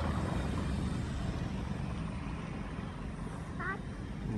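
Cars driving slowly along a dirt track: a low, steady engine and tyre rumble. A short voice is heard near the end.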